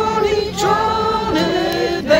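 Multi-voice a cappella singing of a Polish patriotic song, layered voices holding chords that shift together about half a second in and again near the end.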